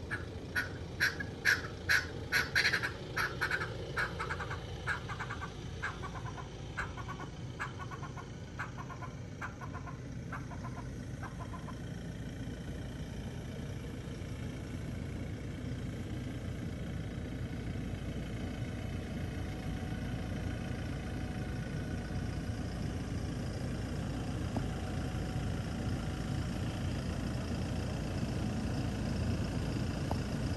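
A bird gives a long series of sharp, fowl-like calls, several a second at first, then slowing and fading over about ten seconds. Under it a vehicle engine runs at low speed, growing slowly louder toward the end as the vehicle comes closer.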